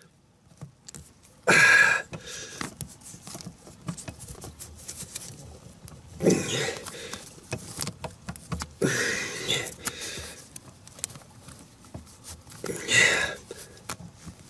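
Plastic cable ties being cinched tight by hand, ratcheting through their locks in about four short zips, with small clicks of plastic and wire handling between them.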